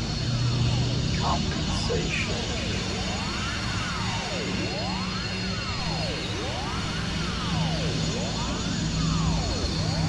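Dense layered experimental noise music: a swooping tone that rises and falls in pitch over and over, a little more than a second apart, over a steady low drone and a thick wash of sound.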